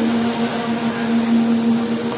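Show music playing one long held low note, over the steady hiss of the fountain jets spraying.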